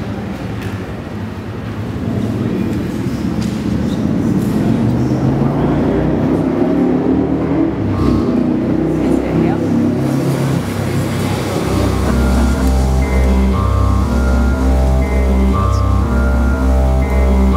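Retro-style electronic music played from looped phrases on a laptop sequencer. It opens with a murky, shifting low sound. About two-thirds of the way through, a steady pulsing bass pattern with repeating higher synth notes comes in.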